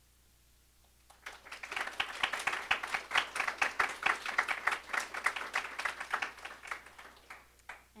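Audience applauding: many people clapping, starting about a second in and dying away near the end.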